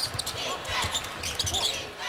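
A basketball being dribbled on a hardwood court, a few bounces heard under the steady noise of an arena crowd.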